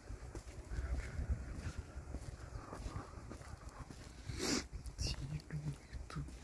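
Outdoor park ambience with a steady low rumble and faint distant voices, and one short loud sound about four and a half seconds in.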